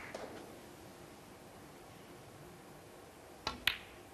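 A snooker shot: two sharp clicks in quick succession about three and a half seconds in, the cue tip striking the cue ball and the cue ball striking an object ball. Before that, the last of a round of applause dies away.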